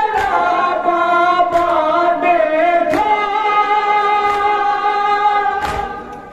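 A men's group chanting a Shia noha in unison without instruments, holding long drawn-out notes, the melody stepping to a new pitch about three seconds in. A few sharp slaps of chest-beating (matam) cut through the chant, one about a second and a half in, one at about three seconds and one near the end.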